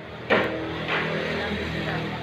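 Background music with steady held notes, starting suddenly about a third of a second in.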